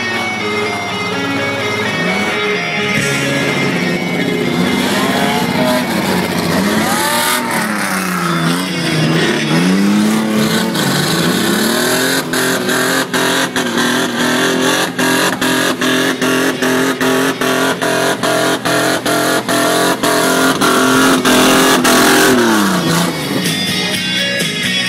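Race pickup truck's engine revving up and down, then held at high revs for about ten seconds with short sharp cut-outs, about three a second, as the truck slides on the snow. The revs fall away near the end.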